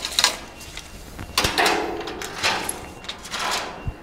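A steel tape measure's blade sliding and scraping across wooden truck-bed boards as it is repositioned, in several irregular rubbing swells with a few sharp clicks of handling near the start and the end.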